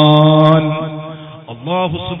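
A man's voice drawing out a syllable in a sustained, chant-like tone at a nearly steady pitch, which fades out within the first second. A short spoken syllable with a swooping pitch comes near the end.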